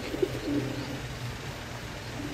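Black-saddled fantail pigeons cooing in the first second, over a steady low hum.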